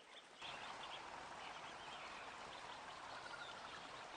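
Faint forest ambience: a steady wash of trickling, dripping water with faint bird chirps over it. It comes in about half a second in, after a moment of near silence.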